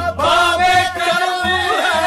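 Qawwali singing: a male voice holds long, wavering, ornamented notes with no clear words, over the ensemble's accompaniment. A new phrase starts just after the beginning, and the line slides up and back down near the end.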